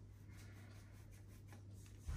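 Near silence: a low steady hum with a few faint ticks and scratches as table salt is tipped from its container onto a teaspoon.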